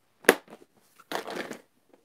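A sharp snap, then about half a second of crinkling, tearing rustle: toy car packaging being opened by hand.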